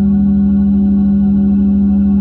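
Steady synthesized meditation 'frequency' drone: one strong held tone with a stack of fainter steady tones above it and a fast, even pulsing throb in the bass, with no change.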